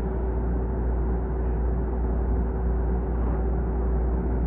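JR Chūō Line electric train running, heard from inside the cab end: a steady low rumble with a constant hum.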